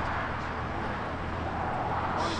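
Toyota GR Supra's turbocharged engine running at a low, steady idle as the car rolls slowly past.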